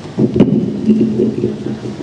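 Handheld stage microphone being handled and rubbed against clothing, giving a knock about half a second in and then a second of rough rumbling through the PA.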